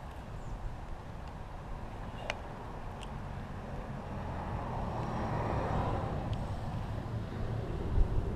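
A car passing on a nearby road, rising to its loudest about five to six seconds in and then fading, over a steady low rumble. A couple of faint clicks occur early on.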